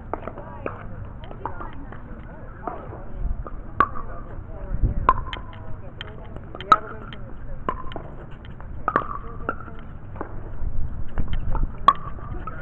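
Paddles hitting a plastic pickleball back and forth in a rally, with the ball bouncing on the hard court: a string of sharp pops at irregular intervals of about a second. A low rumble comes in twice, in the middle and near the end.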